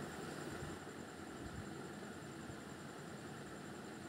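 Induction cooktop running: a faint, steady whirring hum.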